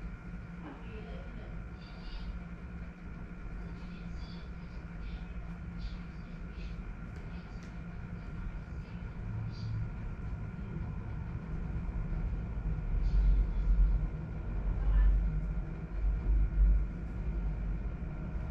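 A steady low hum with faint constant higher whines underneath. A deeper rumble swells and peaks several times over the last few seconds.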